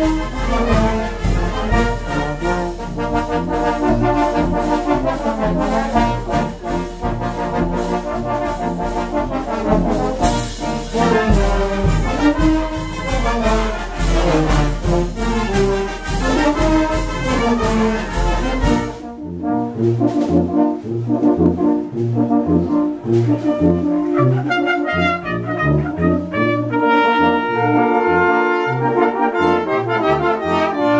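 Oaxacan banda filarmónica playing: trombones, trumpets, saxophones and sousaphone over snare and bass drum keeping a steady beat. A little past halfway the sound changes abruptly: the drum-and-cymbal wash thins out while the brass carry on with held chords.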